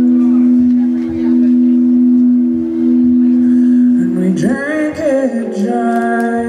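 Live band playing a slow country-rock song: a chord held steady for about four seconds, then a woman's lead vocal comes in about four seconds in, sliding between notes over the band.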